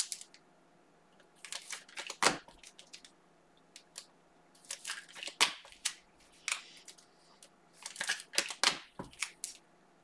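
Cards and plastic packaging being handled on a table: sharp clicks, crinkling and tearing in three short clusters, with quiet gaps between them.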